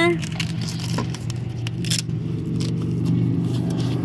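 Steady low hum of an idling car heard inside the cabin. Over it come rustling and a series of short clicks as the nylon straps and plastic buckles of a dog booster seat are pulled and fastened around the centre console, mostly in the first half.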